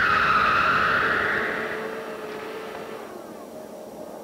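A rushing, hiss-like swell of noise with a faint steady tone beneath it, loudest at first and fading away over about three seconds.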